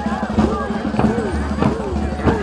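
A steady drumbeat of about three beats every two seconds, under a crowd's shouts and whoops.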